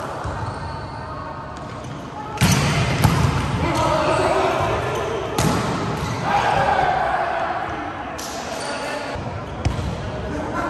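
Volleyball being struck during a rally on an indoor court: a few sharp hits of hands and forearms on the ball, the first about two and a half seconds in and the last near the end, each echoing in the large hall. Players' voices sound between the hits.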